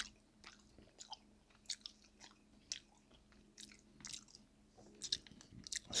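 Quiet close-miked chewing of a mouthful of pasta in meat sauce, with scattered short, sharp clicks of mouth sounds and a fork against a plastic food container. A faint steady hum sits underneath until about five seconds in.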